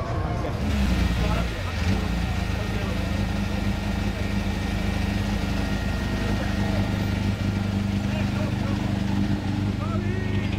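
A Peugeot 306 rally car's engine catches about a second in, then idles steadily on the podium ramp.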